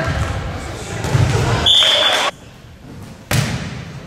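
Players' voices and a dull ball thud in an echoing gym, then a referee's whistle blown once for about half a second, about two seconds in. After a sudden drop in sound, a sharp hit of a volleyball rings through the hall near the end.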